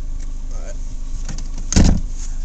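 Steady low hum inside a car, with one short loud clunk near the end.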